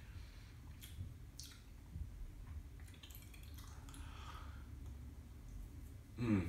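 Faint lip smacks and mouth sounds from a person tasting a sip of energy drink, with a few soft clicks about a second in, over a low steady room hum.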